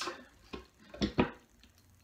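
A few light clicks and taps of a hand tool working at a wooden box, about half a second in and twice around the one-second mark.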